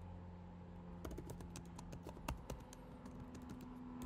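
Typing on a computer keyboard: a quiet run of quick key clicks, starting about a second in, with one louder key press in the middle.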